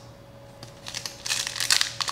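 Foil wrapper of a Pokémon TCG booster pack crinkling as it is gripped and torn open, in quick irregular crackles that start about two-thirds of a second in.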